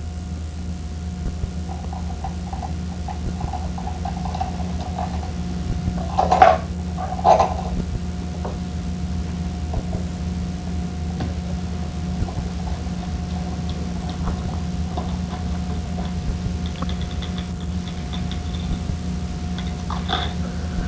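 A steady low hum, with two brief squeaky sounds about six and seven seconds in.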